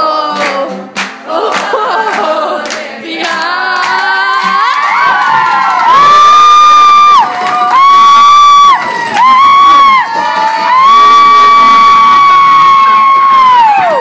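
A group of friends singing together. The song builds to a run of long, loud, high held notes, with cheering mixed in.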